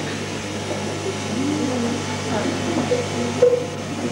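Indistinct chatter of many people seated in a hall, voices overlapping with no single clear speaker, over a steady low hum. A brief louder voice rises out of it a little before the end.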